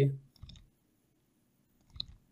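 A couple of faint, isolated computer mouse clicks, the sharper one near the end, as text is selected and the cursor is placed in the code.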